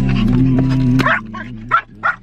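A small dog whimpering and yipping, with a few short, high calls in the second half, over background music holding steady low notes.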